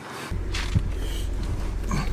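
Steady low rumble of a VW Golf R's turbocharged four-cylinder engine idling, heard from inside the car, starting suddenly just after the beginning, with a few light knocks.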